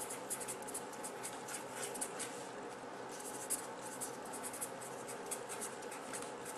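Pen writing on a surface: a rapid, irregular series of short scratchy strokes, faint against a steady low room hum.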